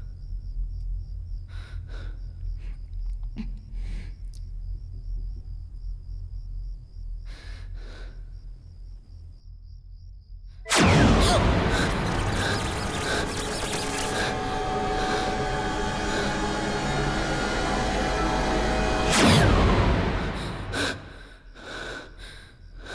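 Horror film background score: a low, dark drone with a faint high pulsing tone, then about eleven seconds in a sudden loud dissonant music sting that holds for about eight seconds before dropping away.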